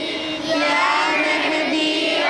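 A group of boys chanting a devotional song together in unison, holding long notes that glide slowly up and down.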